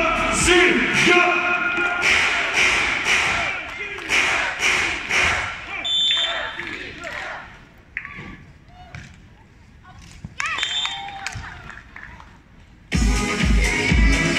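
Music with a voice over it on the stadium loudspeakers, then a brief high whistle and a quieter stretch with a few sharp ball hits of a beach volleyball rally. Loud dance music with a steady beat comes in suddenly about a second before the end.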